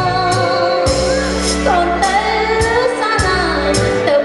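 A woman singing a melody into a handheld microphone over amplified backing music with a steady beat, about two hits a second, and a bass line.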